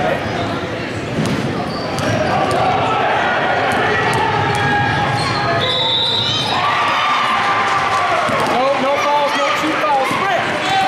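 A youth basketball game in a large gym. Spectators talk and call out while a basketball bounces on the court. Near the end, short squeaks come as players run.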